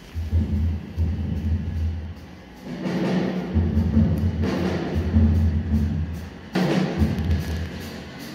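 Live jazz from a trumpet, double bass and drums trio, here mostly deep double bass notes with drums and cymbals coming in, swelling about three seconds in and again near the end.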